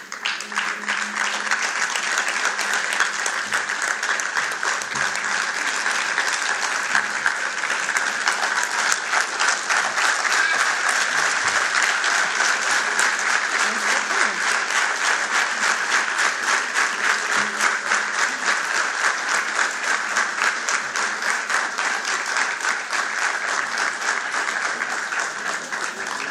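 Audience applauding: one long, steady round of clapping that starts abruptly and eases slightly near the end.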